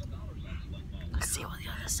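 Soft, whispered talk inside a car over a steady low rumble from the vehicle, with the voices picking up about a second in.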